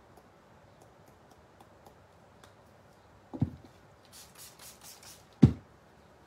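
A quick run of about five spritzes from a water mister, spraying water to activate the sprinkled pigment powder, framed by two knocks on the tabletop, the second and louder one right after the spritzes.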